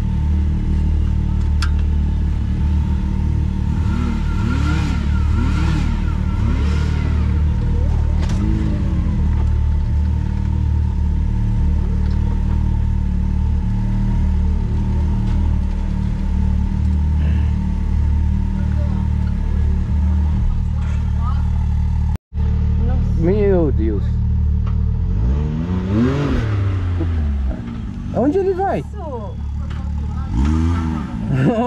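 Can-Am Maverick X3 side-by-side's engine running steadily at low revs, heard from inside the open cockpit, with a momentary dropout about two-thirds of the way through.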